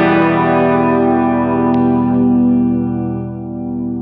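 Electric guitar chord on a Dunable Cyclops DE, struck at the start and left to ring through a Dunable Eidolon delay and reverb pedal, the sustain slowly fading. A single short click comes a little before halfway.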